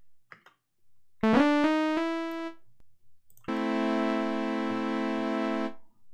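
Software polysynth playing chords. A first chord comes in about a second in, its pitch bending up at the attack, and dies away over about a second. A second chord comes in halfway through, is held steady for about two seconds and cuts off suddenly.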